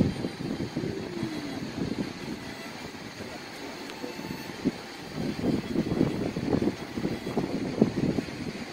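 Low, gusty rumble of air from a large electric fan buffeting the phone's microphone, rising and falling in uneven bursts and strongest in the second half.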